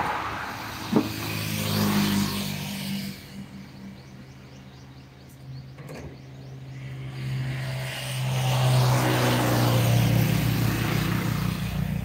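Road traffic on a highway: vehicles going by, the rushing sound swelling about two seconds in, fading, then swelling again from about eight seconds, over a steady low engine hum.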